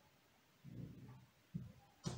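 Near silence: classroom room tone, with two faint low soft sounds, one about a third of the way in and a short one near the end.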